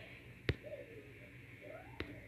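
A single sharp click about a quarter of the way in, then faint, short voice-like sounds that glide up and down in pitch, one in the middle and one near the end.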